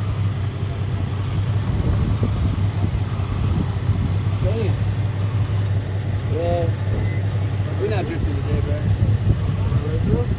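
Nissan 350Z's 3.5-litre V6 idling with the hood open, a steady low hum. A few short, faint voice-like sounds come and go over it in the second half.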